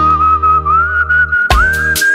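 Human whistling of a film-song melody, holding one long note that wavers and steps slightly upward, over a soft sustained low accompaniment. Percussion hits come back in about one and a half seconds in.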